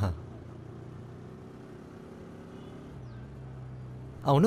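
Motorbike engine running steadily at low riding speed, a low hum that grows a little stronger near the end.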